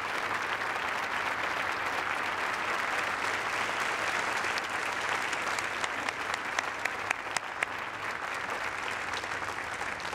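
Audience applauding steadily in a large hall, a dense wash of many hands clapping with sharper individual claps standing out.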